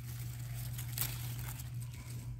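A single sharp snip of garden scissors cutting a Swiss chard stalk about halfway through, over faint rustling of leaves and a steady low hum.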